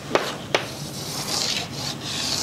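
Chalk on a blackboard: two sharp taps as the chalk strikes the board, then long scraping strokes from about a second in as the straight lines of a box are drawn.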